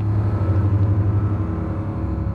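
A loud, low, steady rumbling drone with a fast, even pulse, swelling and then slowly fading: an ominous sound-design swell in the film's soundtrack.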